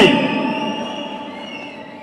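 A man's amplified voice dying away through a public-address system: a long echoing tail that fades steadily over about two seconds, with faint steady ringing tones underneath.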